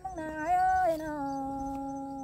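A singer holding a long drawn-out note in Thái folk call-and-response singing. The pitch slides up, holds, then drops a step about a second in and stays steady.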